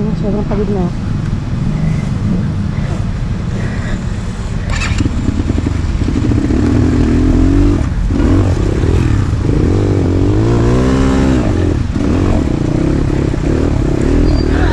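Enduro dirt bike engine running at low speed on a trail. In the second half it is revved up and eased off several times.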